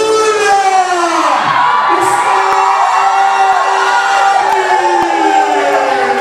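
A voice drawn out in long held notes that glide slowly up and down, one falling steadily near the end, over a cheering crowd.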